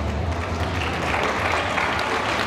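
Quickstep dance music dying away in the first half-second, then an audience applauding.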